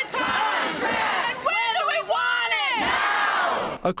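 A crowd of rallying teachers chanting a slogan in unison, a run of short shouted phrases one after another.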